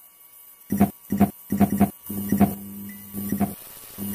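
Neon sign buzzing sound effect: short stuttering electrical buzzes as the tubes flicker on, running into a steady hum for about a second and a half, with one more buzz near the end.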